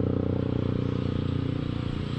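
A vehicle engine running steadily at an even pitch, slowly fading.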